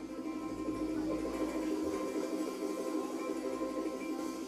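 Ukulele playing as a live band starts a song, with no singing yet.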